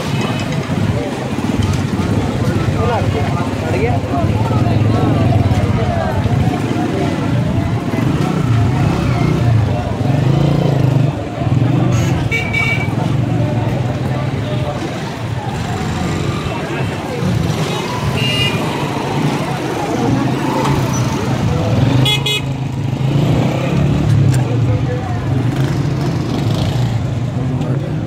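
Busy market street: many people's voices over motorcycle and other vehicle engines running. Short horn toots sound several times in the second half.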